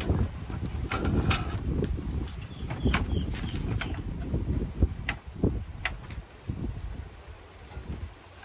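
Scattered knocks, clatters and taps from wooden boards, a plastic mat and a cordless drill being handled and set down on concrete, over a low steady rumble.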